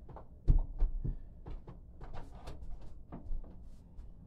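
A heavy thud about half a second in as a kettlebell is set down on a wooden floor, followed by a few lighter knocks and clicks.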